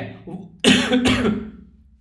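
A man coughs: one sudden, loud cough about half a second in that fades out within a second.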